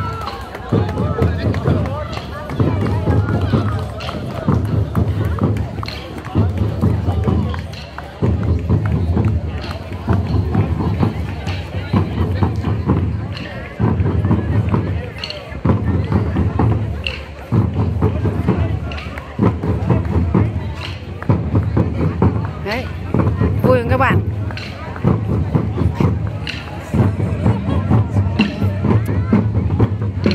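A drum group playing hand drums to cheer on runners: a driving rhythm of dense hits that repeats in phrases of about two seconds, with short breaks between them.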